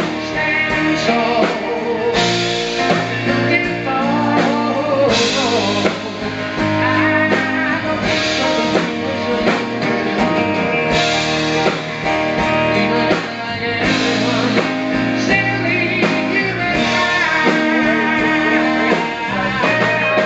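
Live rock band playing a song: electric guitars, bass, keyboard and drums.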